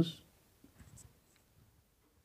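Marker pen writing on a whiteboard: a few faint, short strokes of the tip, about half a second to a second in.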